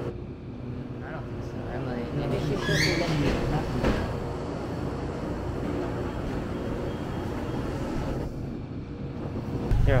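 Steady low hum of a shop interior lined with refrigerated display cases and coolers, with faint background voices. A brief rising squeal comes about three seconds in. Just before the end the sound cuts to a louder low rumble.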